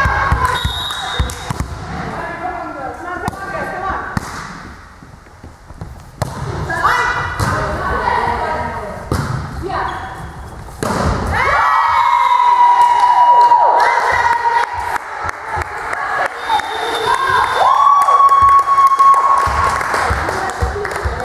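Indoor volleyball rally: a volleyball is struck and thuds in a run of sharp knocks, with players shouting calls. From about halfway on come long, held shouts.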